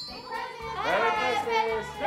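Children's voices calling out, high and gliding up and down in pitch, starting a little way in.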